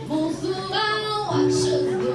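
A young vocalist singing a melody into a microphone, holding one note near the middle, over an accompaniment of held low notes.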